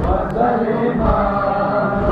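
A group of voices chanting a mourning lament (nauha) for Husayn in unison. A low thud about once a second keeps the beat: chest-beating (matam).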